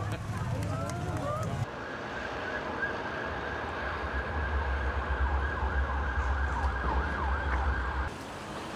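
Street ambience with a low traffic rumble that grows louder over the last few seconds. Before it, there is a brief stretch of crowd voices that cuts off abruptly.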